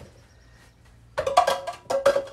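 A tossed ball hitting small targets on a table and knocking them over: a quick clatter of knocks with a brief ringing tone, starting just past a second in.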